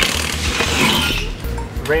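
A cordless impact wrench running for about a second on the lug nuts of a mower wheel, heard as a bright, hissing whirr, over background music with a steady beat.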